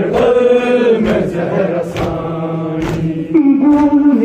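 Voices chanting a noha, a Shia lament, in long held notes, over steady chest-beating (matam): sharp hand slaps about once a second, five in all. The chant steps up to a higher note near the end.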